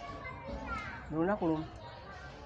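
A short vocal sound from a person, rising then falling in pitch, a little after a second in, over faint background voices.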